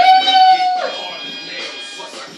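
A person's voice making a loud, high-pitched held cry. It swoops up at the start, holds for most of a second, then slides down, and fainter vocal sounds follow.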